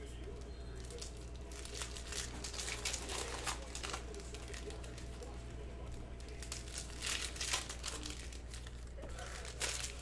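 Plastic cellophane wrapper of a trading-card pack crinkling and tearing as it is ripped open and the cards are pulled out, with bursts of crackle about two to four seconds in and again around seven seconds.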